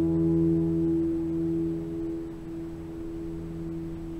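Overtone stringboard's strings, just struck on the note E with a felt mallet, ringing on: a sustained low tone with its octave above and a shimmer of higher overtones, slowly fading away.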